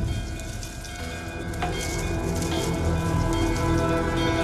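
Background score of a television drama: many sustained held tones over a hissing, rain-like wash of sound.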